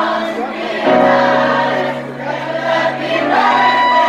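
Live band music heard from the audience in a small club: sustained chords over bass, with singing voices. The bass moves to a new, fuller note about a second in.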